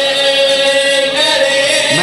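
A man's voice chanting in the sung style of a Shia majlis recitation, holding one long note that shifts in pitch near the end.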